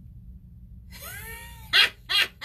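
A woman's wordless, high-pitched teasing 'ooh', its pitch rising and then falling, cut off by a short, sharp burst of laughter near the end.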